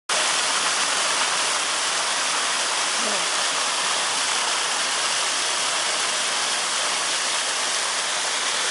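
Floodwater rushing in a steady, loud torrent, pouring into a lane after heavy rain.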